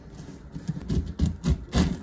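Chef's knife sawing down through pineapple rind, a quick run of crunching cuts and knocks against a wooden cutting board.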